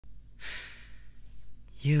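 One soft breath close to a binaural microphone, lasting about half a second, then near the end a male voice starts singing a cappella.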